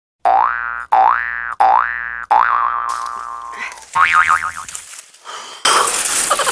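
Cartoon-style comedy sound effect: four quick rising boing glides in a row, then a shorter wobbling warble. A steady hiss of outdoor noise comes in near the end.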